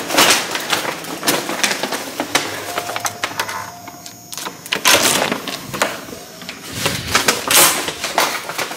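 Hotel room door being unlocked with a key card and opened: a steady beep from the electronic lock about three seconds in, then loud clicks and clunks of the handle, latch and door near the middle and the end.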